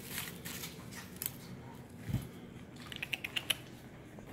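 Faint crinkling of a paper snack wrapper as a cinnamon twist is picked out of it, then a quick run of about six light clicks near the end. A soft thump comes about two seconds in.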